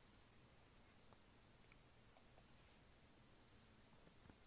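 Near silence: room tone, with two faint clicks a little over two seconds in.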